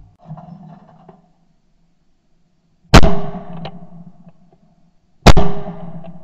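Two 12-bore shotgun shots about two and a half seconds apart, each a sharp, very loud crack with a short echoing tail, typical of both barrels of a side-by-side fired at a pair of clays.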